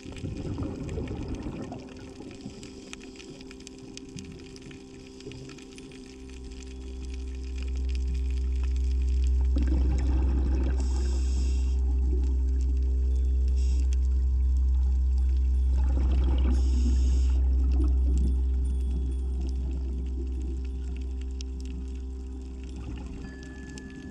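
Scuba diver's regulator breathing underwater: bursts of exhaled bubbles, each followed by a short hiss, roughly every six to seven seconds. A loud low drone swells in after about six seconds and fades near the end.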